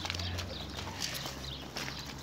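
Scattered light clicks and scuffs of feet moving on dry, leaf-strewn dirt, over a low steady hum.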